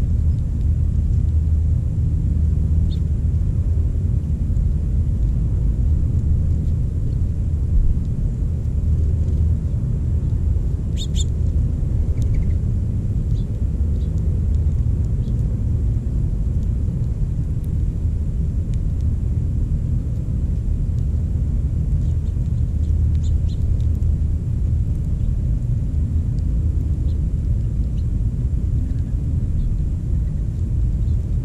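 Steady low outdoor rumble, with a short high bird chirp about eleven seconds in and a few faint chirps later on.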